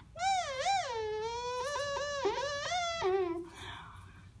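Beatboxed 'kazoo' sound: a high, buzzy hummed tone made with the bottom lip vibrating against the teeth, like a kazoo. It wavers up and down twice, slides down and holds with small pitch steps for about three seconds, then stops.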